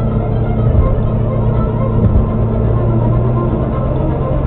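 Steady road and engine rumble inside a car cabin at highway speed, with radio music playing under it.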